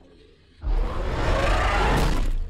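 Tyrannosaurus rex roar, a film sound effect: a loud, harsh roar over a deep rumble that starts suddenly about two-thirds of a second in and is still going at the end.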